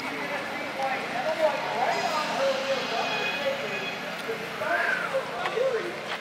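Indistinct voices talking in the background, with no words clear enough to make out.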